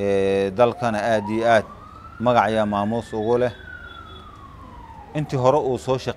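A siren wailing faintly in the background under a man's speech, sliding slowly up in pitch and then back down over about four seconds.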